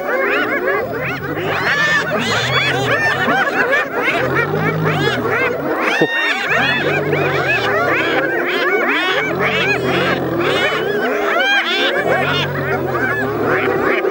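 A clan of spotted hyenas calling all at once: a dense chorus of many overlapping rising and falling cries. Under it, a deep growl swells and fades about every two to three seconds.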